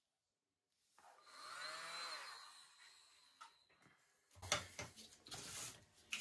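Small handheld electric blower running for about two and a half seconds, its whine rising and then falling in pitch as it blows wet acrylic paint outward into bloom petals. Then a run of short knocks and clatter of handling near the end.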